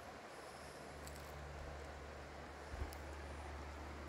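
Faint outdoor background: an even hiss with a steady low hum, and one soft low bump nearly three seconds in.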